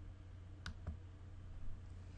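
Two faint clicks about a fifth of a second apart, over a low steady hum of room tone.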